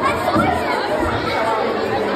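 Crowd chatter: many children and adults talking at once in a large room, a steady babble of overlapping voices.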